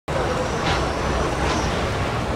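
Steady outdoor street noise: a continuous low rumble with hiss.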